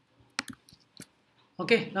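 A few sharp clicks from computer keys and controls being pressed, about four in the first second, while code is saved and the editor view moves.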